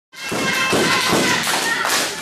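A few heavy thuds on a wrestling ring's canvas in the first second or so, over the noise of an audience in a hall.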